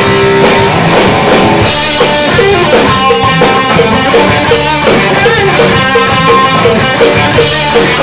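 Live rock band playing loud, with distorted electric guitar, bass guitar and a drum kit.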